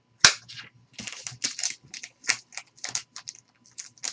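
Clear plastic magnetic card holder being handled: one sharp snap about a quarter second in, followed by a run of light plastic clicks and rubbing as it is turned over in the hands.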